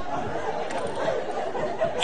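Indistinct murmur of voices over steady background noise.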